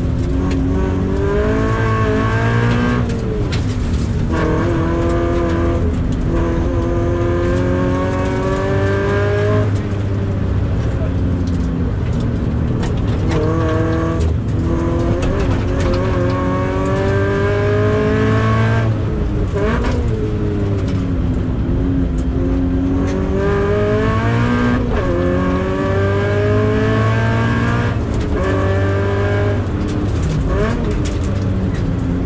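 Toyota 86's FA20 flat-four engine heard from inside the cabin, revving hard through the gears on a circuit: its pitch climbs under full throttle, then drops at each shift or braking point, about six times over.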